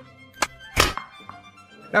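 Two sharp thunks, the second and louder a little under a second in, over soft background music.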